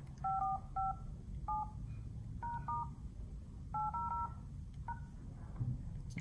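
LG V20 smartphone dialer keypad tones: about ten short two-tone touch-tone beeps at an uneven pace as a number code is keyed in, here a hidden service code that opens the phone's service menu.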